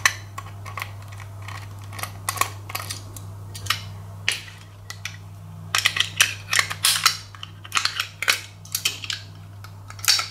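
Ratchet screwdriver undoing small screws inside an opened hard disk drive: a string of small metallic clicks and taps, few at first and coming thick in the second half.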